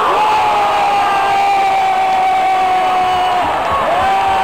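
A person's voice holding one long, loud high "aah" for about three seconds, its pitch sagging slightly, then a short upward swoop into a second held note near the end, over a background of crowd noise.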